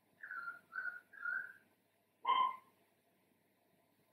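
Animal calls: three short whistle-like notes in quick succession, each falling slightly in pitch, then one louder, fuller call a little after two seconds in.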